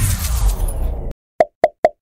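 Cartoon transition sound effects: a loud splashy whoosh that cuts off about a second in, then three quick, high plops in a row as three emojis pop onto the screen.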